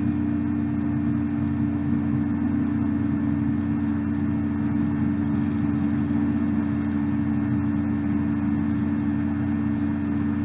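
A steady low hum with a constant noisy drone underneath, unchanging throughout.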